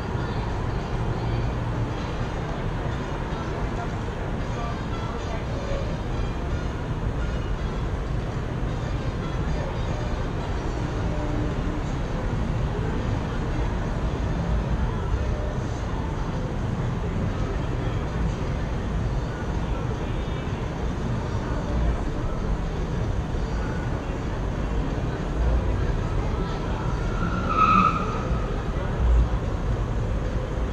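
Steady background noise with a low rumble and indistinct voices, with a few soft low thumps and one brief high-pitched squeal near the end.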